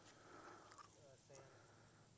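Near silence: faint outdoor room tone, with a faint short sound about a second in.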